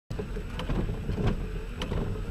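Inside a car in the rain: the vehicle's engine idling with a steady low rumble, while the windshield wiper sweeps the wet glass, with a few sharp ticks about half a second apart.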